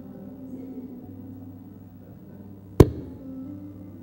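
A single sharp knock a little under three seconds in, over a low steady hum.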